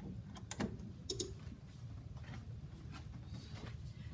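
Quiet kitchen room tone with a steady low hum and a few faint, scattered clicks and light taps from handling utensils.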